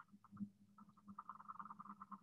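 Vibratory courtship signal of a male Habronattus jumping spider, picked up by a phonograph-needle vibration sensor and played back faintly: a rapid series of short buzzy pulses that grows denser about a second in.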